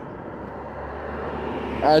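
A motor vehicle approaching, its noise growing gradually louder.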